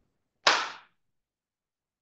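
A single sharp smack about half a second in, dying away quickly in the room.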